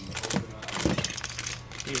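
Small packaged hobby parts being rummaged through and lifted out of a cardboard box: a run of short, irregular clicks, clinks and rustles.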